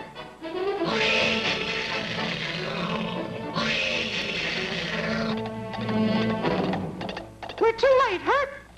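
Cartoon soundtrack: dramatic music with two loud, dense swells of sound, the second fading into ringing tones about six seconds in, and sliding brass notes near the end.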